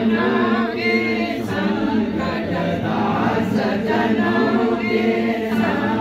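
A group of people singing a Hindu devotional aarti hymn together in unison, unaccompanied, the voices sustained and continuous.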